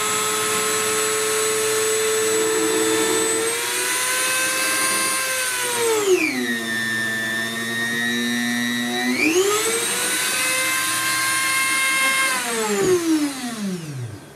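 Dremel rotary tool with a conical steel brush running at high speed with a steady whine. About six seconds in, the pitch drops sharply as the motor is loaded by the brush pressing against the mirror back and scrubbing away the silvering. About three seconds later it rises again as the brush is lifted. Near the end the tool is switched off and the whine falls away as it spins down.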